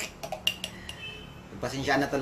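A metal spoon clinking against a glass mug several times in quick succession, with a faint ring after one clink, then a man's voice starts talking near the end.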